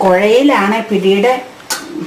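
A woman's voice speaking for over a second, then a single sharp metallic clink near the end as a steel ladle knocks against a steel pot of water.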